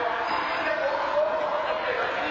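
Indistinct voices of people talking, echoing in a large indoor court, over a steady background hiss.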